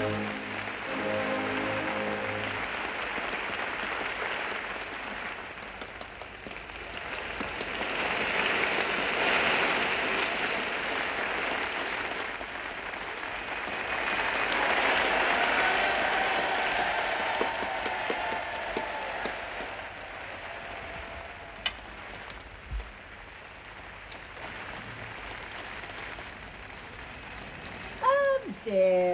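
Orchestral music ends on its last notes, then an audience applauds. The applause swells twice and dies down after about twenty seconds.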